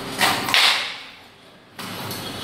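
Long steel bar scraping and prying loose old wooden parquet strips from the subfloor: two loud scrapes in the first half-second that fade away, a brief lull, then scraping starts again suddenly near the end.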